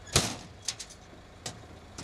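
A sharp knock just after the start, then a few lighter clicks, from a roadworks sign panel being handled on its metal frame stand, over a steady low background rumble.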